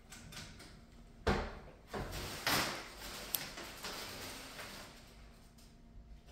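A clear plastic raffle drum being opened with a sharp knock about a second in, followed by paper tickets rustling as a hand rummages through the pile.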